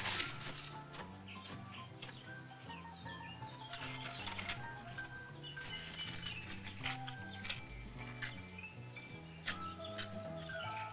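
Quiet film score music: a low line changing note every second or so under short, higher melodic notes.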